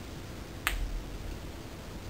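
A single sharp click about two-thirds of a second in, with a brief low thump under it, over quiet room tone.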